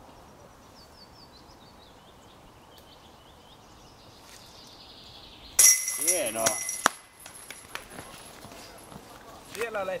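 A disc golf disc strikes the chains of a metal disc golf basket about halfway through: a sudden loud metallic clash that rings on for about a second. A voice calls out briefly over the ringing.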